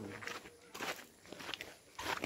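A few soft, irregular footsteps on grassy ground with undergrowth.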